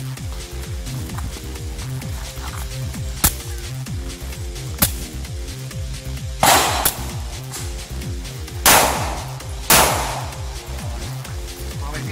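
Pistol shots over background music with a steady beat: two quick shots about six and a half seconds in, then two more spaced about a second apart a couple of seconds later, each with a short ringing tail. Two fainter sharp cracks come earlier.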